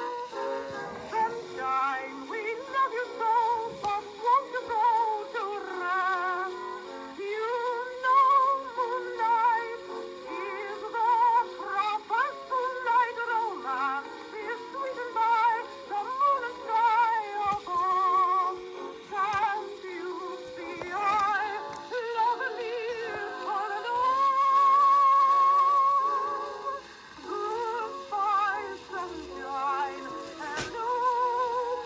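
Old 1920 acoustic-era phonograph recording of a woman singing a popular song with heavy vibrato over a small band. A long held note comes about two-thirds of the way through.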